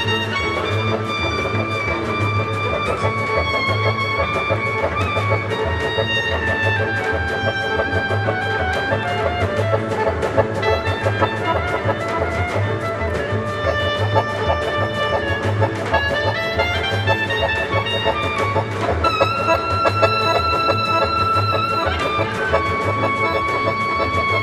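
A Balkan folk orchestra playing a čoček, with accordions, violins and double bass over an even pulsing bass beat. A clarinet plays a lead melody.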